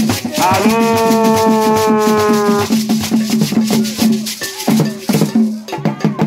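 Agbadza music: Ewe barrel drums struck with bare hands in a steady, dense rhythm over shaken rattles. A voice holds one long, slightly falling sung note early on, for about two seconds.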